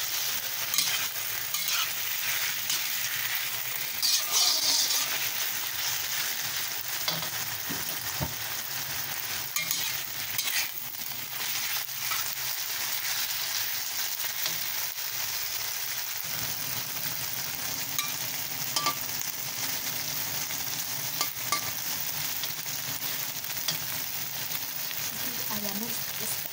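Sliced chicken and onion sizzling in hot oil in a wok while a metal spatula stirs them, scraping and clicking against the wok now and then, with a louder burst of scraping about four seconds in.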